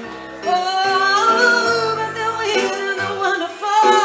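Live song: a woman singing a gliding melody over her own electric keyboard playing, with bass notes underneath. The voice comes in about half a second in after a short lull.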